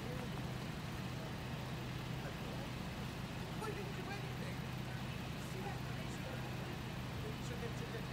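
Steady low hum of a vehicle engine idling, with faint voices talking in the background.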